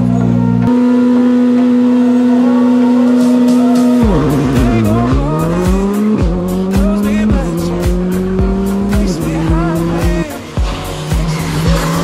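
Skoda Fabia R5 rally car's turbocharged 1.6-litre four-cylinder engine held at steady high revs on the start line, then launching about four seconds in and accelerating hard through the gears, the revs climbing and dropping at each of three quick upshifts.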